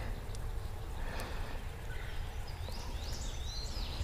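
Steady outdoor background noise with a low rumble, and a few faint rising-and-falling bird calls about three seconds in.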